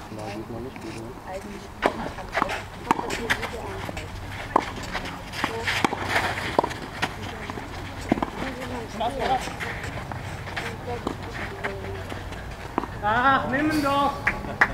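Tennis doubles rally on a clay court: a series of sharp, irregularly spaced knocks of the ball being struck, with footsteps and indistinct voices, and a louder shout near the end.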